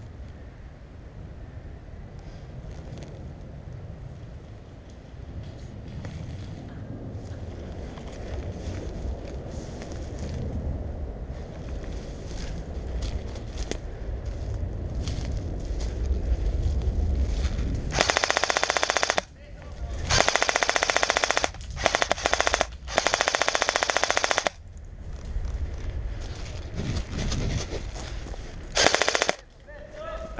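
Airsoft electric gun firing full-auto bursts: four long bursts in quick succession about two-thirds of the way in, and a short one near the end. Before them, a low rumble of wind and movement on the microphone as the player moves through the brush.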